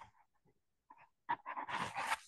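Faint breathy sounds from a person: a short breath, a pause, then a longer hissy intake of breath in the second half.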